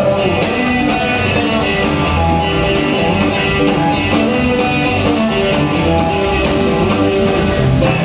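Live folk-rock band playing an instrumental passage with no vocals: acoustic and electric guitars, upright bass and a drum kit keeping a steady beat.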